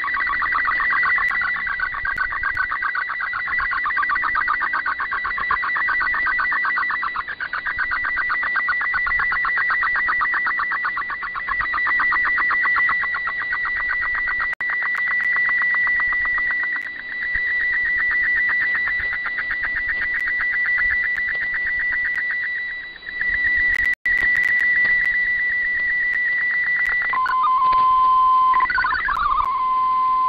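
MFSK digital-mode picture transmission on shortwave radio, decoded as a colour image: a dense, rapid warbling of data tones. Near the end it changes to a steady lower tone with a brief rising glide as the picture finishes.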